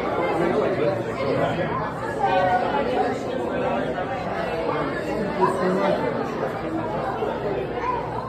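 Many people talking at once: an indistinct, continuous babble of voices with no single speaker standing out.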